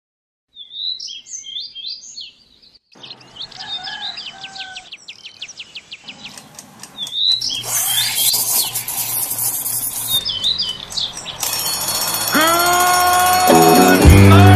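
Birds chirping, followed by a fast, even ticking with more bird calls, then intro music coming in about six seconds in and growing louder, with rising glides near the end.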